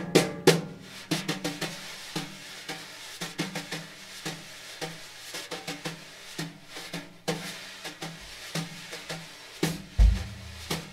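Wire brushes played on a snare drum, a steady run of brush strokes over a continuous swishing hiss. A louder stroke comes about half a second in, then the playing settles into softer, flowing strokes.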